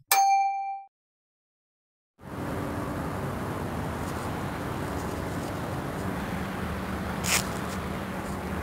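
A single bright notification-bell ding from a subscribe-button animation, ringing for under a second, then about a second of dead silence. After that a steady hiss with a low hum sets in, with one short click near the end.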